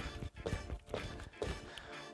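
Background music with faint sneaker steps on a wooden stage floor, about two a second, from wide-open criss-cross shuffle steps; opening the legs this wide makes the step slow.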